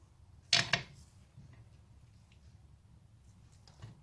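A quick cluster of two or three sharp metal knocks about half a second in, as the classic Mini rear hub is worked over its tight stub axle; otherwise quiet room tone.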